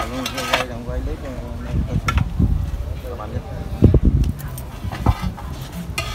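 Compost being raked and dumped into a ring of clay roof tiles: irregular scraping and dull thuds, loudest about four seconds in, with a few sharp clacks of the tiles.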